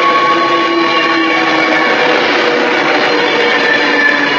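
Class 390 Pendolino electric train moving alongside the platform: loud, steady wheel and running noise with a faint whine.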